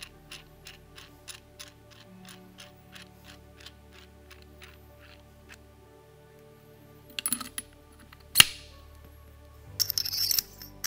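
Background music with a light ticking beat of about three a second. Near the end, small metal parts of the Stanley PB2500N tool's front-end assembly clink and click as they are put back together by hand, with one sharp click about eight and a half seconds in and more clicking and scraping just after.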